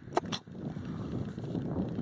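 Wind rumbling on the microphone: an uneven low noise, with a couple of short clicks in the first half second.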